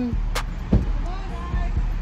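A low steady rumble with two sharp knocks in the first second, then faint voices in the background.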